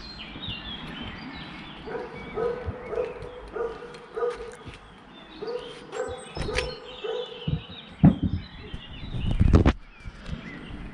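A dog barking in a regular series, about two barks a second with a short break midway, while small birds chirp faintly. A few sharp knocks come near the end.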